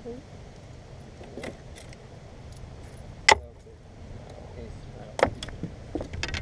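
A few sharp knocks and metallic clinks from handling the caught bass and fishing gear on the bass boat's deck, the loudest about three seconds in and another about five seconds in, over a low steady rumble.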